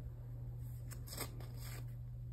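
Fingertips rubbing acrylic paint into a paper journal page: a few short, scratchy swishes about halfway through, over a steady low electrical hum.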